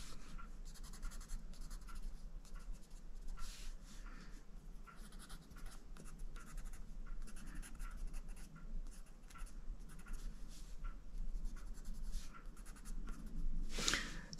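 Prismacolor Premier coloured pencil scratching on the paper of a colouring book in many quick short strokes, faint and continuous.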